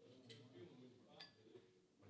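Faint, indistinct voices in a quiet room, with a couple of light clicks.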